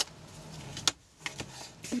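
Scissors cutting through a dried bodice of book paper and gauze hardened with PVA glue: a few sharp, crisp snips, the loudest at the start and another just under a second in.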